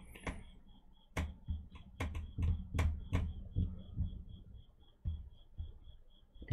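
Scattered sharp clicks and soft knocks from a computer mouse and desk being handled, irregular and fairly quiet. Under them runs a faint high-pitched ticking, about four to five a second.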